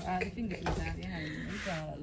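A few light clinks and clatter over quiet voices talking in the background.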